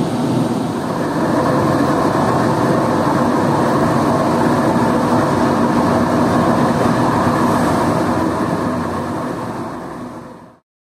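Industrial carpet centrifuge (spin dryer) running with rolled carpet spinning in its drums: a loud, steady mechanical noise that fades away near the end.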